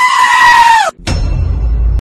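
A loud, drawn-out bleat-like cry lasting about a second, rising at the start and falling off at the end. It is followed by a deep, bass-heavy sound until a sudden cut.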